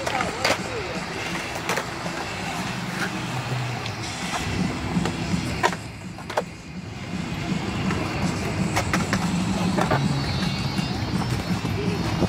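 Skateboards rolling on concrete, the urethane wheels giving a steady rough rumble, with several sharp clacks of boards hitting the concrete spread through.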